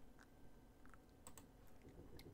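Near silence with a few faint, scattered computer keyboard clicks.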